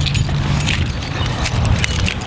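Keys jingling in irregular clicks, mixed with rustling handling noise as a person walks with a handheld camera, over a steady low hum.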